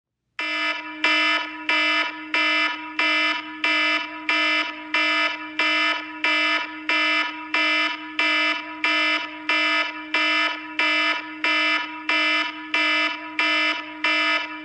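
Alarm clock beeping: a single steady electronic tone repeated evenly, about one and a half beeps a second.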